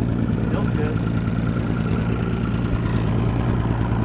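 Boat's outboard motor idling steadily, a low hum with a faint high whine over it.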